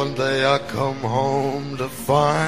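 A low male voice singing drawn-out, wavering notes in a country ballad, with acoustic guitar under it.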